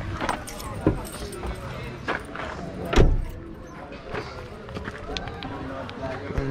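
Clicks and knocks around a car, the loudest a single heavy thump about three seconds in, as of a car door being shut, with faint voices in the background.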